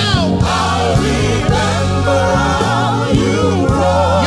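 Live gospel worship music: a male lead vocal and a backing choir singing over electric keyboard accompaniment with sustained low bass notes.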